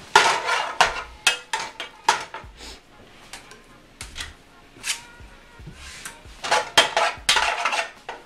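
A cooking utensil knocking and scraping against a frying pan as shrimp are turned. The knocks come in a quick cluster over the first couple of seconds, thin out, then cluster again about seven seconds in.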